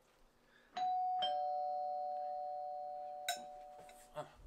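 Two-tone doorbell chime: a higher ding about a second in, then a lower dong, both ringing on and fading slowly. A short click near the end.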